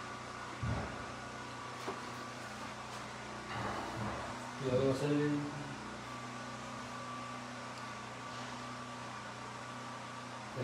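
Steady room hum with a thin steady whine over it, a soft knock about half a second in, and a brief low voice near the middle.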